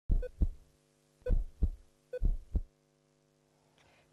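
Heartbeat sound effect in a TV programme's opening ident: three lub-dub double thumps about a second apart over a held steady tone, dying away well before the end.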